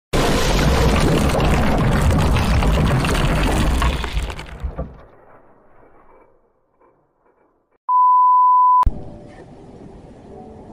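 Logo-intro sound effect: a loud crashing, shattering noise for about four seconds that fades away, then a steady high beep lasting about a second, cut off by a click. Faint surf from the beach follows near the end.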